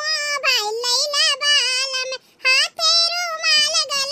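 A high-pitched cartoon character's voice with a wavering, drawn-out delivery, pausing briefly a little after two seconds in.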